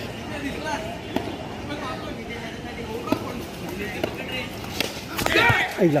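Players and onlookers calling out across an outdoor cricket ground, with a few sharp, separate knocks. Near the end comes a loud shout whose pitch falls steeply.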